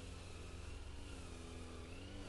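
Faint, steady engine hum with a slowly wavering pitch over a low rumble.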